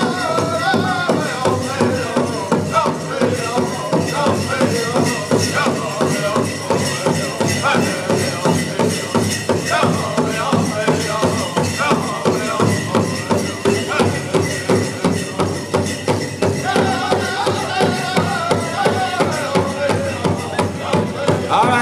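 Powwow drum group performing a song: a steady, even beat on a large drum, with group singing over it that comes and goes in phrases.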